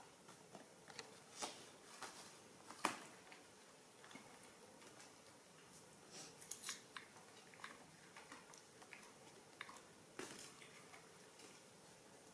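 Soft scattered clicks and crunches of baby monkeys biting and chewing fruit and handling it on plates, over quiet room tone; the sharpest click comes about three seconds in, with a small cluster around six and a half seconds.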